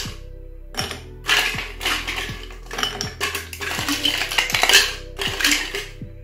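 Ice cubes clinking against glass, again and again, as they are lifted with tongs from a glass ice jar and dropped into a mixing glass. Background music plays underneath.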